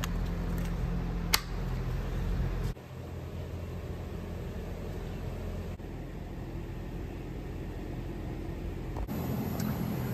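Steady low machinery hum with two sharp clicks in the first two seconds; the hum drops abruptly just before three seconds in and swells again about a second before the end.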